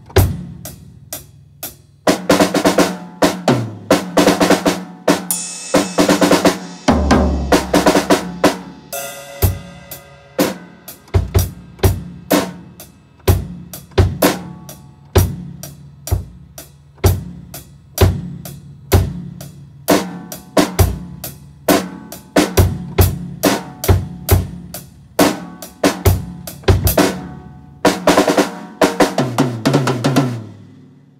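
Acoustic drum kit played continuously: a steady groove of kick and snare strokes with cymbal crashes, and a fill down the toms near the end.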